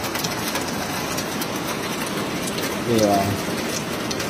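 Heavy rain falling, a steady even hiss throughout. A voice calls out briefly about three seconds in.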